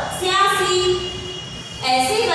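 A woman's voice reading a number table aloud, one word drawn out for about a second, then trailing off before the reading picks up again at the end. Speech only.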